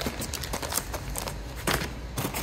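Handling noise as a plastic-bagged instruction booklet is lifted out of a hard plastic carry case and set aside, and the cables inside are touched: a few light rustles and clicks.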